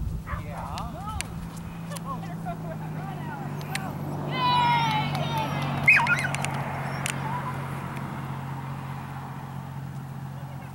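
People's voices outdoors, with a high drawn-out falling call about four seconds in and a short sharp high call near six seconds, over a steady low hum.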